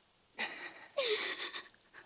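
A woman's two short, breathy gasps as she is kissed. The second gasp carries a brief falling whimper.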